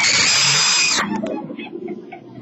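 A sudden loud, harsh hissing buzz with a steady whine in it, lasting about a second and cutting off sharply.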